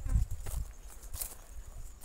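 Footsteps and rustling of brush as someone walks through scrub, with a low thump near the start and a few light crackles of leaves and twigs around the middle.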